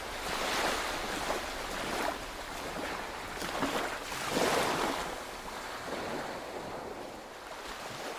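Sea waves washing in, a steady roar of surf rising in several surges a few seconds apart and slowly growing quieter toward the end.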